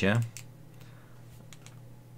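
The end of a spoken word, then a few faint, short clicks in a quiet room.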